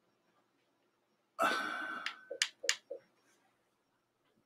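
A short breathy exhale about a second and a half in, followed by two sharp clicks and a few soft knocks.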